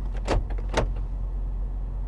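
Low steady hum inside a car cabin, with a few short clicks in the first second.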